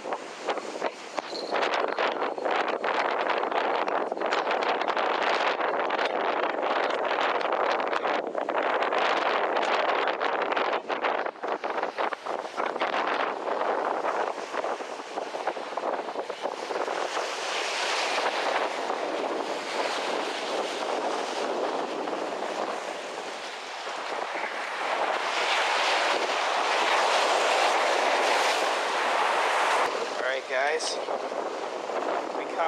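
Strong wind buffeting the microphone, with waves breaking on a rocky shore.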